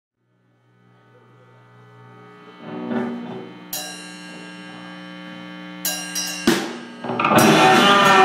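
Live rock band starting a song: sustained amplified guitar tones swell in from silence, with a few sharp struck accents in the middle, then the full band with drums comes in loudly about seven seconds in.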